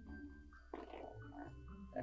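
Paper towel being pulled and torn off the roll: a short, faint papery rustle about a second in.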